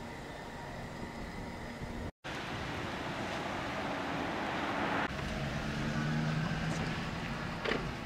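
Car road and engine noise heard from inside the cabin: a steady hiss with a low hum. The sound cuts out completely for a split second about two seconds in, then the same steady cabin noise carries on.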